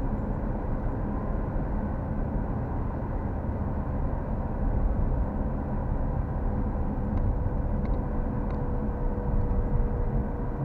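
Road and engine noise inside a moving car, picked up by a dashcam: a steady low rumble with a faint steady hum running through it.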